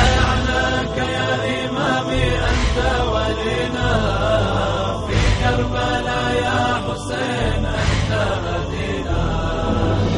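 Arabic devotional nasheed for Imam Hussein: voices chanting with no clear words, over a deep, steady low drone.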